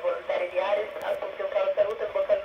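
A voice received over FM radio on the ISS voice downlink at 145.800 MHz, coming through a Yaesu transceiver's speaker with a narrow, thin tone.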